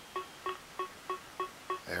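Contour Surface Sound Compact Bluetooth speakerphone giving a steady run of short electronic beeps, about three a second, after being switched on by opening its arm: the signal of it looking for and linking up with the paired phone.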